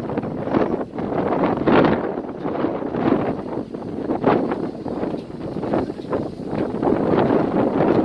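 Wind buffeting the microphone of a camera on a moving boat: a loud, gusty rushing noise that swells and drops every second or so.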